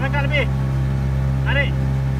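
A boat engine running steadily as the boat cruises over calm water, with a high-pitched voice heard over it at the start and again about one and a half seconds in.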